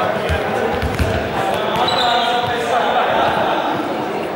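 Basketballs bounced on a sports-hall floor, several dribbles in the first second or so, with voices talking.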